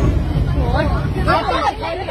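Several women's voices talking over one another in a crowded train carriage, over a low rumble of the moving train that fades about two-thirds of the way through.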